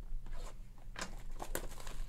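Hands handling and opening a sealed cardboard trading-card hobby box: a series of short crinkles, tears and cardboard clicks, bunched about a second in and again near the end.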